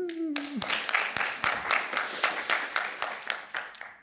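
Audience applauding, a dense patter of hand claps that thins out and fades near the end.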